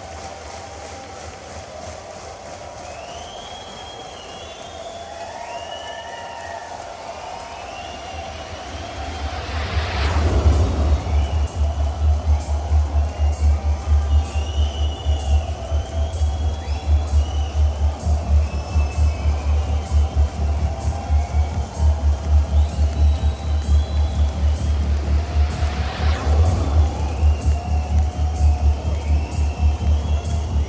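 Opening of a live rock concert recording: sustained keyboard tones with audience whistles and crowd noise. About ten seconds in, a loud pulsing low bass line starts with a cymbal swell, and the music runs on in a steady rhythm.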